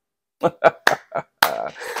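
A man chuckling: a few short, sharp laughs about a quarter-second apart, then a longer breathy laugh near the end.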